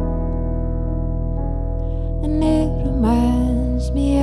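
Electric piano holding sustained chords, with a woman's singing voice coming in about two seconds in with long, gliding notes.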